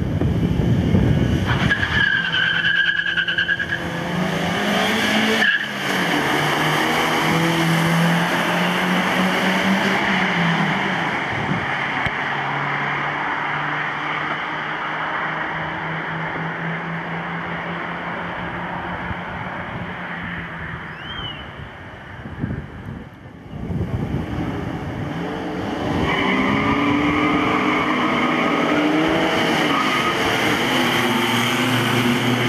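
Two cars' engines revving hard as they accelerate from a standing start, the engine note climbing and then stepping back down at each gear change, over tyre and road noise.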